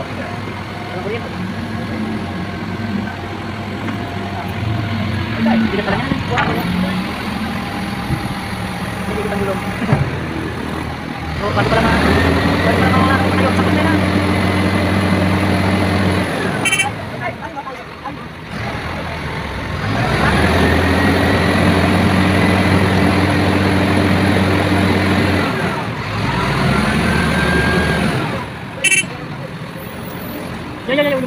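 Truck-mounted boom crane's diesel engine revving up and holding high revs twice, each time for about five seconds, with a whine that rises and levels off, then dropping back down as the boom is worked.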